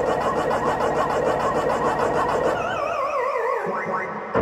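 Arcade-style electronic sound effects played over the arena PA: a fast, even electronic pulse, then a warbling tone that falls in pitch in steps, like a video game's game-over sound.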